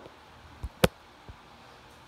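Two short knocks about a fifth of a second apart, a little under a second in, then a faint tap: handling noise from a phone camera being set down and settled into position.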